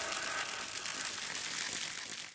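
A crackling, rattling hiss fading steadily away after the music cuts off.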